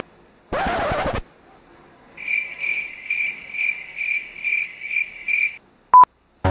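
Cricket chirping sound effect: about eight evenly spaced high chirps, a little over two a second, the comic cue for an awkward silence after a failed reveal. A short swishing burst comes before it, about half a second in, and a brief loud beep sounds at the very end.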